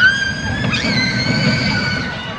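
Small family roller coaster train running on its steel track: a low rumble from the cars with a steady high-pitched wheel squeal over it.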